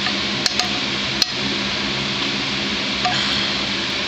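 A metal spoon clinking a few times against a frying pan as meatballs are lifted out of the oil, over a steady mechanical hum and hiss.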